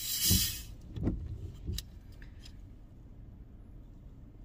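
Cap of a plastic bottle of carbonated soda twisted open, the gas hissing out briefly, followed by a few low bumps as the bottle is handled.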